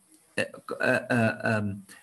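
Speech: a person talking, starting about half a second in after a brief pause.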